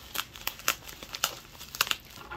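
Plastic bubble-wrap packaging crinkling as hands handle it and pick at its opening, a string of irregular sharp crackles, the loudest near the end.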